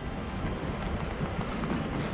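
Strong wind buffeting the microphone on an open beach in rain, an even, steady rumble and hiss.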